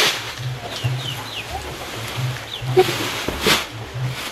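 Background music with a low, pulsing bass pattern, over which come a few short, high, falling chirps. Two sharp knocks sound, one at the start and one near the end, where the sacks are being handled.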